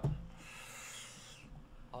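A soft rubbing noise lasting about a second, then fading out.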